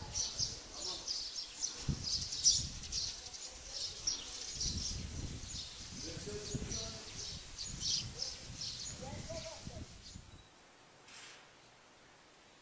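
Small birds chirping, many short high calls a second, over a faint murmur of voices. It all drops away sharply about ten and a half seconds in, leaving near quiet.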